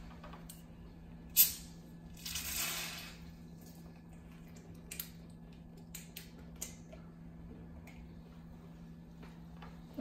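The screw cap of a glass bottle of sparkling mineral water being opened: a sharp click, then about a second of hissing as the carbonation escapes, and a few faint clicks afterwards.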